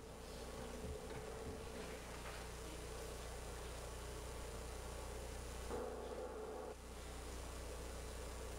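Quiet room tone with a low steady hum, and a brief faint swell of sound about six seconds in.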